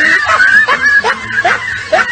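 A woman laughing: high-pitched giggles in short rising bursts, about three a second.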